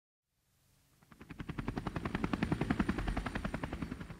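Helicopter rotor beating rapidly, about ten chops a second, fading in about a second in, swelling, then fading away at the end.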